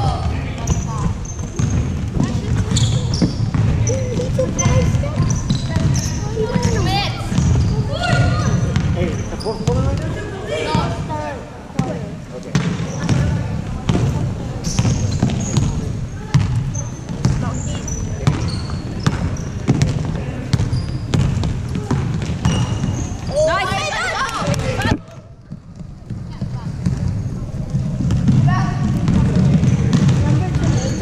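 Basketball game sounds in an echoing gym: a ball bouncing on the hardwood floor, short high sneaker squeaks, and voices of players and spectators calling out. The sound drops away suddenly for about a second near the end.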